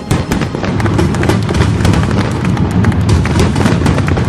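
Fireworks going off in quick succession: dense crackling and popping over a steady low rumble.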